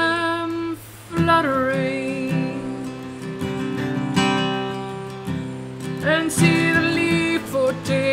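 A man singing to his own strummed acoustic guitar, holding long sung notes over the chords, with a short break about a second in.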